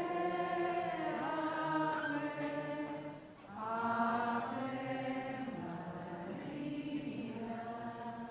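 A group of voices singing a slow, chant-like hymn in held notes, in two phrases with a brief breath pause about three seconds in.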